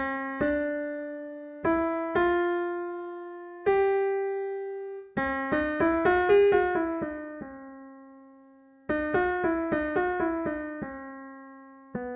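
Pianoteq 8 virtual Steinway D piano playing a scale retuned in quarter tones, rooted on C raised a quarter tone, with only the third left at normal pitch. A few single notes each die away, then two quick runs come about five and nine seconds in.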